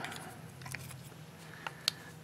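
Hands handling small pipe parts, a pen-blank stem and shank pieces: a few light clicks and taps, the sharpest near the end, over a faint steady low hum.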